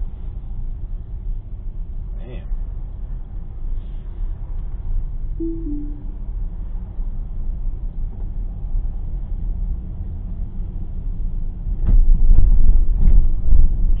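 Steady low rumble of road and engine noise inside a moving car. A short, low two-note falling tone comes about five and a half seconds in. Near the end there is a knock, and the rumble grows much louder.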